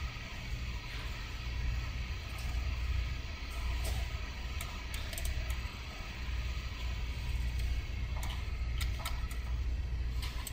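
A steady low hum, with a few faint clicks about four, five, eight and nine seconds in.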